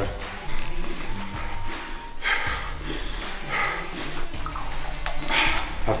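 Background music, over which a man takes three short, sharp breaths through the nose, sniffing ammonia smelling salts.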